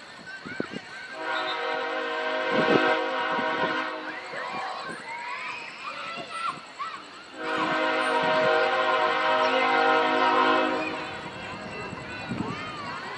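A horn sounds two long steady blasts, each about three seconds, the second starting about three and a half seconds after the first ends, with faint shouted voices between them.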